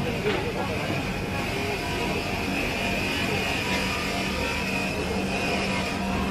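A steady mechanical hum holding one constant low tone, with faint voices behind it.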